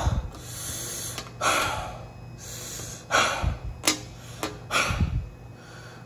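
A man breathing hard in repeated heavy huffs and exhales, about four in six seconds, voiced as physical exertion.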